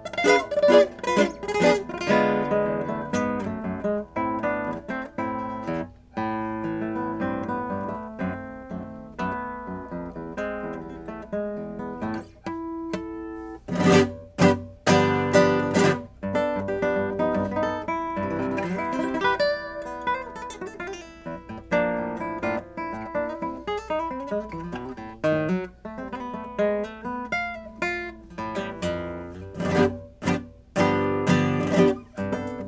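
2013 Kazuo Sato Prestige classical guitar with nylon strings, played fingerstyle in a flowing solo piece of plucked notes. About halfway through come a few loud strummed chords in quick succession before the picking resumes.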